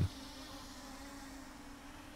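Faint, steady buzz of a small quadcopter drone's propellers.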